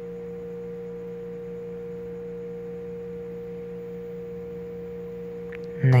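Steady electrical hum: a low tone and a higher tone held level and unchanging throughout.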